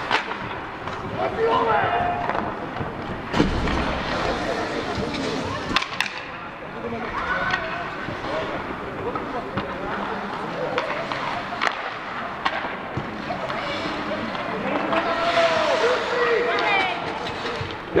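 Ice rink sound of a youth hockey game in play: a steady din of voices calling out, broken by a few sharp knocks from sticks and puck on the ice.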